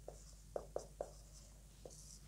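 Marker pen writing on a whiteboard: a faint run of about five short strokes as a word is written out.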